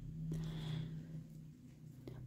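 Faint rustle of t-shirt yarn and a crochet hook being handled, over a low steady hum that fades out after about a second and a half.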